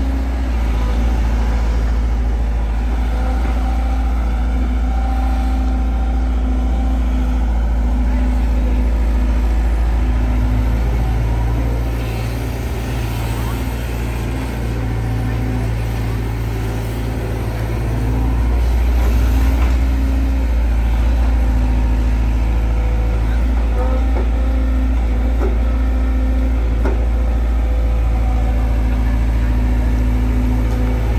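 Sumitomo SH long-reach excavator's diesel engine running steadily as the boom and bucket work, a low drone with a humming tone that drops in and out; it eases off for several seconds midway, then picks up again.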